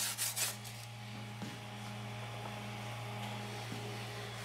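A Secop BD35F 12 V compressor refrigeration unit running on a test run, a steady faint hum. In the first half-second a finger rubs and scrapes over the frost on its cold evaporator plate.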